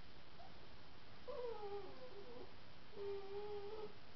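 A dog left alone whining, a sign of its separation anxiety: a brief whine, then a falling drawn-out whine about a second in, and a steadier one near the end.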